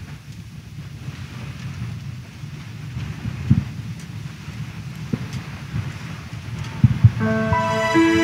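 Congregation sitting down in the pews: a low rumble of shuffling and rustling with a few thumps, at about three and a half seconds, five seconds and a pair near seven. Instrumental music with held notes begins just after seven seconds, opening the offertory.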